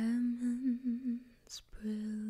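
A woman humming a melody softly, close to the microphone: a held note that wavers through a short run, a brief break with a quick breath or mouth sound, then a second held note.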